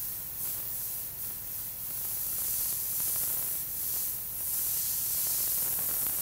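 Airbrush spraying paint in a tight line onto fabric: a steady, high-pitched hiss of air and paint from the nozzle that swells and eases a few times as the trigger is worked.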